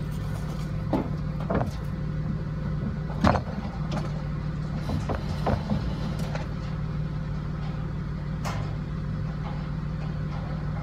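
A vehicle engine idling steadily, with a handful of short sharp knocks scattered through; the loudest comes about a third of the way in.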